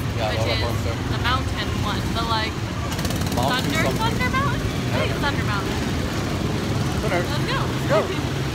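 Small gasoline engines of ride-on race cars running on a track, a steady low drone under people talking.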